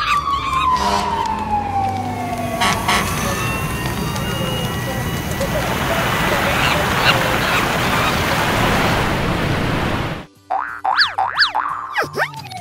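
Edited sound effects: a long falling whistle-like tone that ends about three seconds in, then a loud noisy rush. Near the end it cuts off suddenly, and quick whistles glide rapidly up and down.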